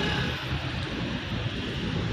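Steady outdoor background noise: a low rumble with a hiss over it.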